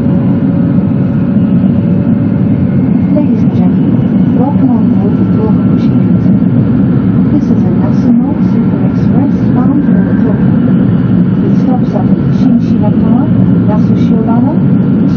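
Steady low rumble of an E2 series Shinkansen running along an elevated track, heard inside the passenger cabin.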